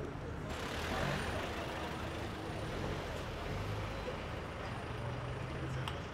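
Road traffic with a heavy vehicle's engine running close by: a steady rush of noise with a low engine hum that grows stronger in the second half.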